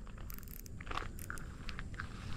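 Faint scattered crunches and clicks of footsteps on a gravelly dirt track, over a low rumble.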